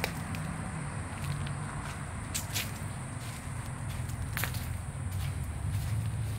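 Footsteps of a person walking, over a steady low rumble, with a few short sharp clicks: two close together about two and a half seconds in and one more a little past four seconds.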